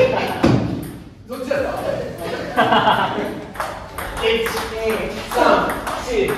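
Table tennis ball clicking back and forth in a rally, bouncing on the table and struck by rubber-faced rackets about twice a second, with a short lull about a second in before the hits pick up again. Players' voices sound over it.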